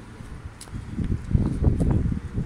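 Wind buffeting the phone's microphone in irregular low gusts, growing stronger about a second in.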